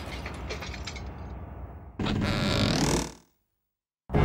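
Cartoon sound effects: the rattling tail of a crash dies away with scattered clicks. About two seconds in comes a loud pitched sound, lasting about a second, that rises in pitch at the end and then cuts off to silence.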